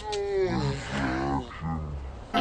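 A person's voice yelling excitedly: a high cry that falls in pitch, then lower growl-like shouts with a short break before the last one.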